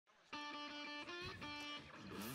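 Short intro music of held chords that starts about a third of a second in and changes chord a few times.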